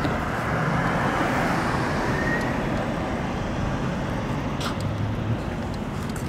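Road traffic on the street alongside: a steady hiss of passing cars' tyres and engines.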